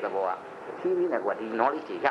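Speech only: a lecturer talking in a training session.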